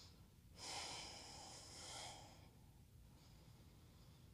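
A woman's long, soft audible breath, lasting about two seconds from about half a second in.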